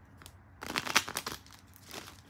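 A short burst of crinkling, crackling handling noise lasting under a second, loudest about a second in.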